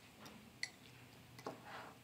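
Three faint clicks of a fork against a glass bowl while a cream cheese filling is stirred.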